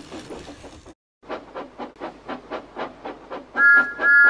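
Steam locomotive sound effect: rhythmic chuffing at about six beats a second, then a two-note steam whistle blowing near the end.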